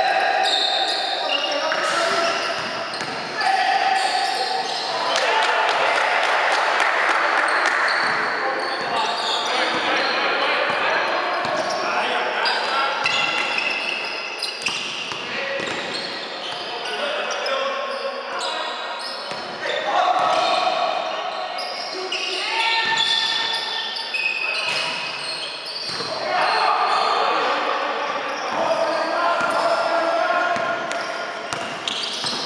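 Basketball game in a gym: players' voices shouting and calling, echoing in the hall, over the ball bouncing on the court floor.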